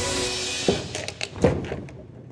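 Two heavy metallic thunks, about 0.7 s and 1.5 s in, from the foot treadle of a manual sheet-metal foot shear as it is stood on. The sheet does not cut: in the operator's words she doesn't weigh enough. Background music fades out in the first half-second.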